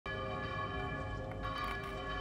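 Bell-like ringing tones: a chord of many steady pitches that starts abruptly and holds level without dying away.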